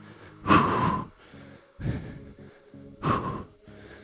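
A man breathing hard from exertion during push-ups: two loud, forceful breaths about two and a half seconds apart, with a softer one between.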